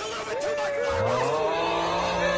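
Several overlapping voices holding long, sliding 'oh' moans. A lower voice joins about a second in.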